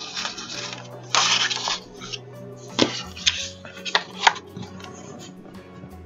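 Sheets of paper rustling and sliding against each other, the loudest swish about a second in, then a few sharp taps and snaps as the sheets are folded in half and creased.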